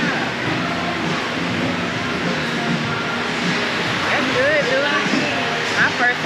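Indistinct chatter of voices over a steady background hum, with music underneath. From about four seconds in, a higher voice rises and falls more clearly.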